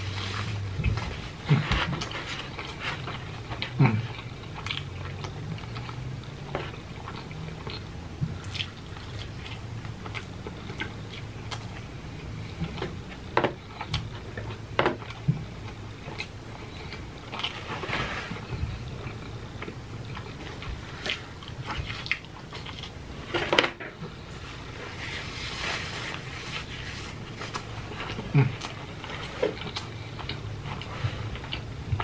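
A person biting and chewing cheese pizza, with irregular wet mouth smacks and clicks throughout.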